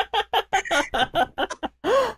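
Laughter: a run of quick, short "ha" bursts, about six a second, ending in one longer drawn-out laugh near the end.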